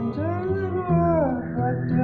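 A man singing one long sliding note, rising and then falling in pitch, over acoustic guitar.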